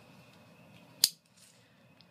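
A single sharp click about a second in as a utility knife is picked up and readied for cutting. Otherwise only faint room tone.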